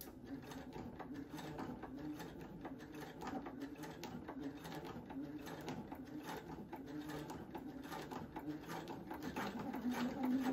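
Computerized home sewing machine stitching steadily through fabric, its motor running at an even speed with rapid needle strokes.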